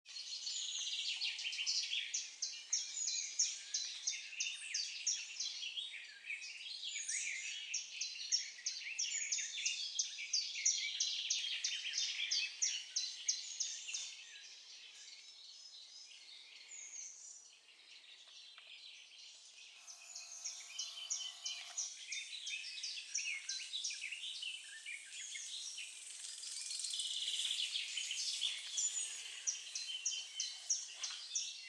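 A dense chorus of small songbirds singing from the wetland reeds and woods, with rapid, repeated high notes overlapping. The singing is strong for the first half, fades for a few seconds and then picks up again towards the end.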